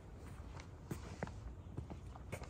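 Footsteps on a paved walkway: a handful of short, unevenly spaced steps over a low steady rumble.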